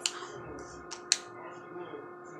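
Two short sharp clicks about a second in, the second louder, from the phone being handled in her hands, over a faint steady hum.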